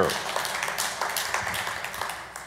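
Congregation applauding briefly, fading away over about two seconds.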